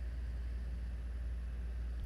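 Steady low hum with faint hiss and a thin high whine, unchanging throughout: the recording's own background noise, with no other event.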